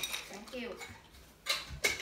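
Kitchen utensils being pulled out and handled, with two sharp clacks near the end.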